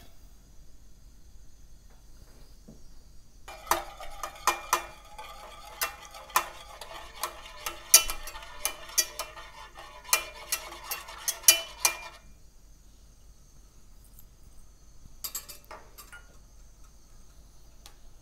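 A wire whisk beating sugar into a little milk in a small enamel saucepan to dissolve it, its wires tapping and scraping quickly against the pan, which rings with each tap. The whisking starts a few seconds in and runs for about eight seconds, with a few more taps a little later.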